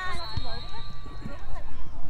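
Voices calling out across a soccer field during play, with a thin steady high tone held for about a second and a half and a single low thud early on.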